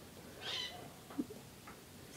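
Embroidery thread being drawn through a foam sheet with a needle: a short, soft rasp about half a second in, then a faint tick.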